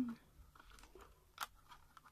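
Faint clicks and taps of hands handling a small wooden clothespin on a paper gift box, with one sharper click a little past halfway.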